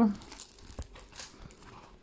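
A diamond painting canvas being bent and handled, crinkling faintly, with a few soft crackles.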